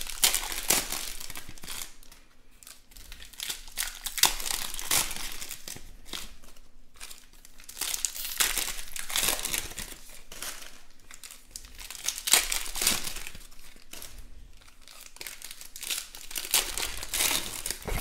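Foil wrappers of baseball card packs crinkling and tearing as they are opened by hand, in bursts about every four seconds.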